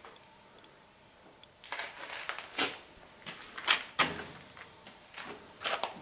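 Irregular scuffs and scrapes close to the microphone, several a second, starting about two seconds in after a quiet start with a few faint ticks.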